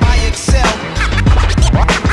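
Hip-hop beat with a DJ scratching a record on a turntable: quick rising and falling swipes over the kick drum and bass.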